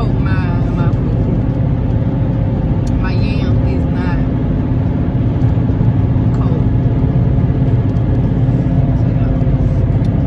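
Steady low rumble of road and engine noise inside a moving car's cabin. A voice speaks briefly just after the start and again about three seconds in.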